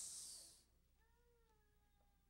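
Near silence: room tone through the preacher's microphone in a pause of his sermon. A hiss fades out in the first half second, and from about a second in a very faint, high, drawn-out tone falls slowly in pitch.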